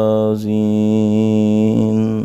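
A man's voice chanting Arabic invocations in a slow melodic recitation, holding one long steady note that shifts in pitch near the end.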